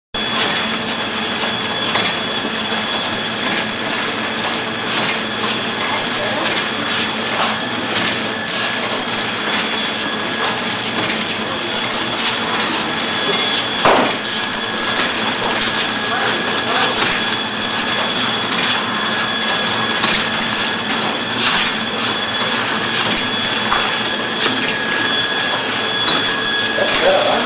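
Biscuit packaging line with a KT 350 horizontal flow-wrap machine running steadily: a constant mechanical din with two steady high whines and a low hum, broken by irregular clicks and clatter, with one sharp knock about halfway through.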